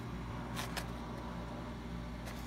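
Faint handling of a cardboard box, with two or three light clicks a little under a second in, over a low steady hum.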